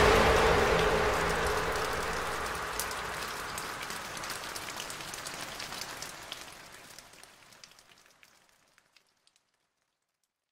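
Recorded rain: a steady hiss with scattered drop clicks, fading out gradually and gone by about eight seconds in.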